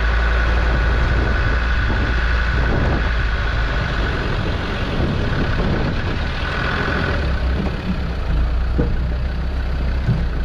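Land Rover 4x4 engine running steadily at low speed, a strong low drone heard close to the vehicle as it creeps over grass towards a ramp. A thin high whine rides over it for the first few seconds and returns briefly around seven seconds in.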